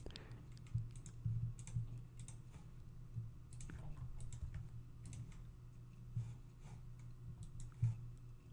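Computer mouse clicks and keyboard keystrokes, short and irregular, as groups are picked, named and applied in the software, over a faint steady low hum.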